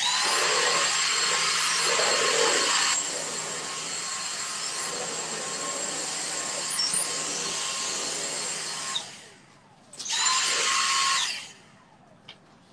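Dyson cordless stick vacuum cleaner running with a high motor whine. It switches on abruptly and runs for about nine seconds, a little quieter after the first three. It then winds down and is switched on again for about a second before stopping.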